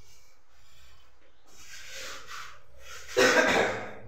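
A softer rustle about two seconds in, then a single loud cough near the end.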